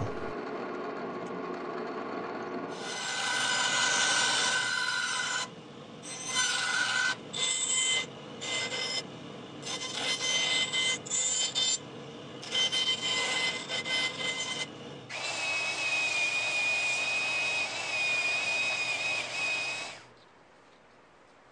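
A drill press running as it drills wood, then a small bandsaw cutting a wooden knife handle in a string of short bursts broken by abrupt gaps, ending in a longer steady cut with a high whine.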